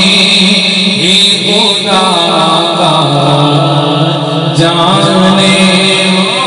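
A man's voice singing a naat into a microphone, holding long notes with winding melodic runs about a second and a half in and again near the five-second mark.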